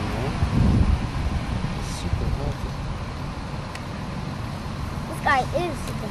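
Steady low outdoor rumble with a few faint clicks, swelling briefly just under a second in; a child's voice comes in near the end.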